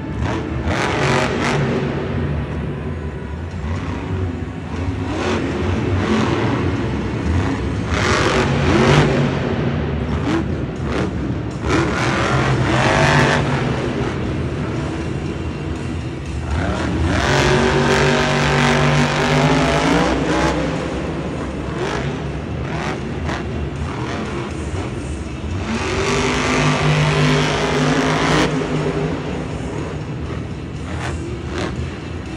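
Monster truck's supercharged V8 engine revving hard in repeated surges, the pitch climbing and falling as it spins and drives on the dirt, echoing in the stadium.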